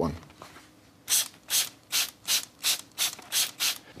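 Hand-held trigger spray bottle squirting water into a hole in a wall: about nine quick squirts, roughly three a second, starting about a second in. The water dampens the inside of the hole so that the expanding foam will expand.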